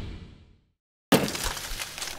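Logo sting sound effects: a deep boom dies away, then after a brief silence a sudden crash with crackle hits just past a second in and fades slowly.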